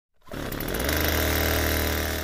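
A chainsaw engine running hard, a loud steady buzzing drone that starts just after the beginning and quickly builds to full level.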